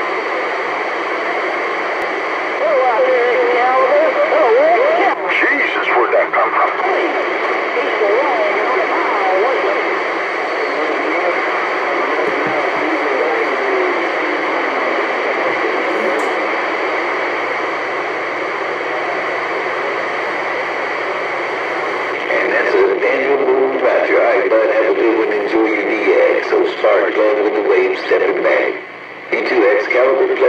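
Galaxy CB radio receiving: steady static hiss with distorted, hard-to-make-out voices of other stations coming through, strongest in the first third and again near the end. The signal cuts out briefly just before the end.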